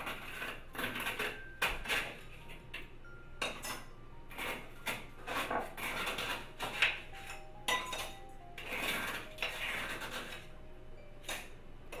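Shaved ice being scooped into a drinking glass: irregular clinks and scrapes of ice and utensil against the glass, some ringing briefly.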